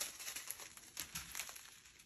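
Small plastic zip-top bags of diamond-painting drills crinkling faintly as they are handled and shuffled, with irregular little crackles and clicks.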